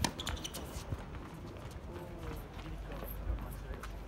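A single sharp tennis-ball impact right at the start, the end of a rally on a hard court, followed by scattered footsteps on the court surface and faint distant voices.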